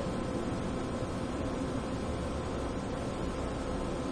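Steady background hiss with a faint low hum, and no distinct events: room tone.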